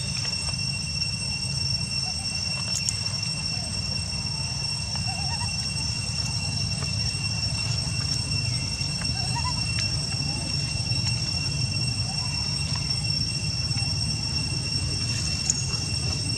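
Steady outdoor ambience: a continuous low rumble under a steady high insect buzz at two pitches, with a few faint short rising chirps scattered through.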